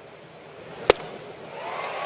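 Steady ballpark crowd noise, then a single sharp pop about a second in as a 93 mph fastball smacks into the catcher's mitt on a swinging third strike. The crowd noise swells into cheering just after it.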